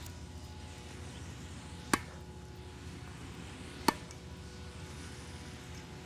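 Two sharp strikes of a tennis racket on a tennis ball, about two seconds apart: forehand drives hit with topspin.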